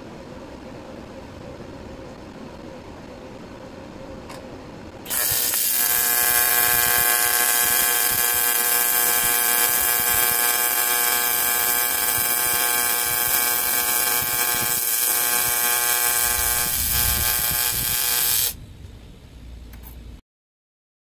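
AC TIG welding arc on aluminum: a steady loud buzz with a hissing crackle that starts suddenly about five seconds in and cuts off about a second and a half before the end. Before the arc strikes there is only a quiet steady background noise.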